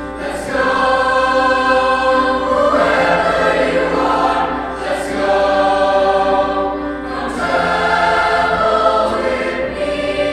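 Large mixed-voice choir singing sustained chords, coming in about half a second in. The phrases are held, with short breaks and sung "s" sounds near the middle and about seven seconds in.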